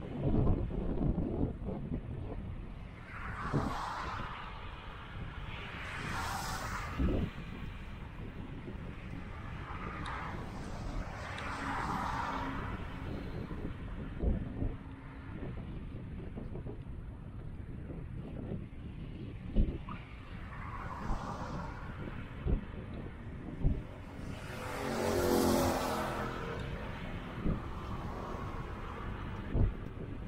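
Cars passing one after another on the road beside a cycle path, each swelling and fading over a couple of seconds, over a steady rumble of wind on the microphone from riding. Near the end a larger vehicle passes, louder and with a low engine note, and there are occasional sharp thumps throughout.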